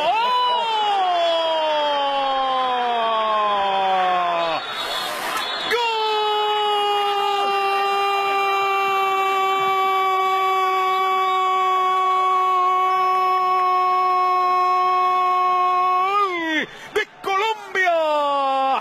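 Football commentator's drawn-out "gol" cry, one long shout: it slides down in pitch for about four and a half seconds, breaks for a quick breath, then holds a single steady note for about ten seconds, rising briefly just before it ends.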